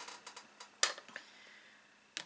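One sharp click a little under a second in, followed by two faint ticks: small objects being handled at a table.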